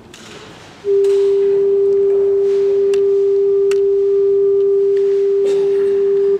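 A single steady pure tone, held unwavering at one pitch for about five seconds after starting about a second in: a reference note sounded for a Gregorian chant schola before it begins to sing.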